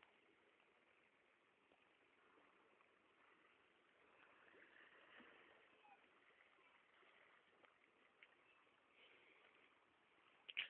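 Near silence: a faint steady hiss with a few soft ticks.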